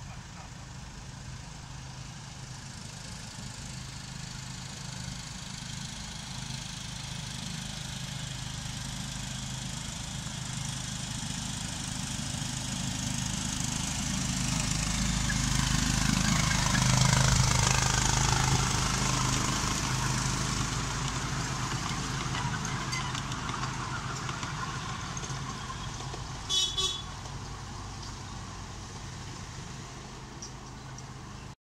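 Miniature railway locomotive hauling its passenger cars past, growing louder to a peak about halfway through, then fading away. Near the end, two short high-pitched horn toots.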